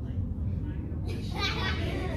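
Indistinct children's voices that come in about a second in, over a steady low hum.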